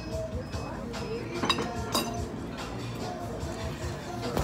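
Tableware clinking, two sharp ringing clinks about a second and a half and two seconds in, as a fork strikes a dish, over the restaurant's background music.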